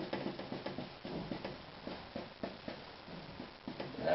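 Chisel-edged bristle brush loaded with oil paint, pulled straight down on a canvas in a run of short strokes, several a second.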